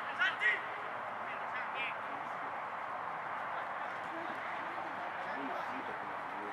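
Distant shouts from footballers on the pitch: a few short, high calls in the first two seconds. Then only steady open-air background noise.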